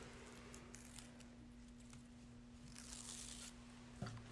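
Faint tearing of the paper backing being peeled off a strip of Lite Steam-A-Seam 2 double-sided fusible web tape on fabric, a little clearer about three seconds in, over a steady low hum.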